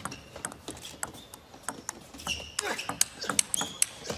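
Table tennis rally: the plastic ball clicking sharply off the players' bats and the table in quick succession, the hits getting louder in the second half. A few short squeaks of shoes on the court floor come in among the hits.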